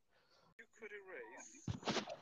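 Dead silence, broken about half a second in by a single sharp click, then a faint voice murmuring and a breath as a man starts to speak again near the end.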